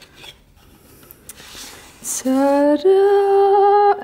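Cardboard rubbing and scraping as a spray bottle is slid out of its snug gift box. About halfway through, a woman's voice sings out two held notes, a short lower one and then a longer higher one, like a "ta-daa".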